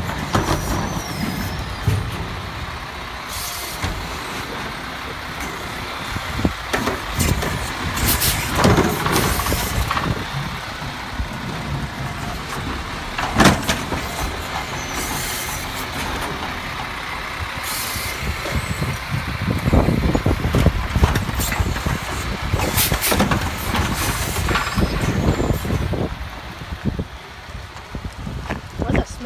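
Peterbilt automated side-loader garbage truck working a cart: the diesel engine and hydraulic arm run while the arm lifts, dumps and sets down a plastic wheeled trash cart, with several sharp bangs of the cart and arm. Air brakes hiss, and in the last third the truck's engine rises as it pulls away.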